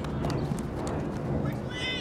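Outdoor soccer-field ambience: a steady low rumble with scattered sharp clicks, and a shouted voice from the field near the end.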